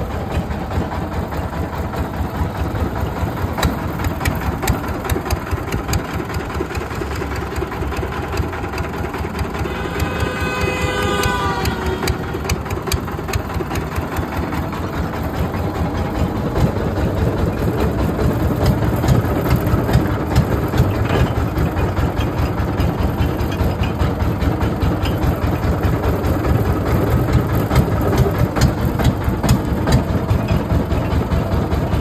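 Motorized sugarcane juice crusher running steadily, its rollers crushing cane stalks with dense crackling over the machine's drone. A short pitched tone rises about ten seconds in, and the low drone grows somewhat louder in the second half.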